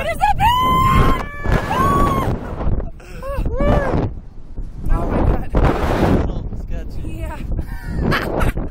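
Two riders screaming and laughing while being flung on a slingshot ride, starting with one long high scream and then shorter cries and laughs. Wind rushes over the on-board microphone.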